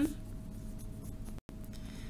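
Pen writing on notebook paper: faint scratching strokes as an equation is written out.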